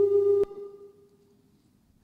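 Public-address microphone feedback: one steady, loud tone with fainter higher overtones that cuts off with a click about half a second in, then fades away to near silence.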